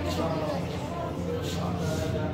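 Visitors' voices chatting indistinctly over a steady low hum.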